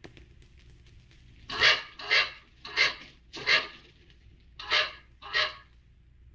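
A dog barking: four barks in quick succession, a short pause, then two more.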